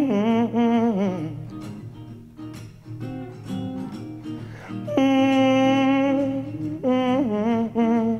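Live band music with acoustic and electric guitar: a long held melodic note with wide vibrato slides down about a second in, shorter plucked guitar notes follow, and another long steady held note comes in about five seconds in and bends near the end.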